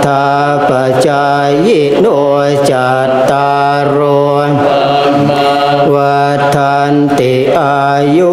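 Group of Thai Buddhist monks chanting Pali verses in unison, a low monotone drone held on one pitch, with a few brief rises and falls of pitch.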